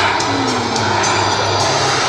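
Turbine-powered radio-control A-10 model jet flying overhead, its turbine running steadily, with music playing in the background.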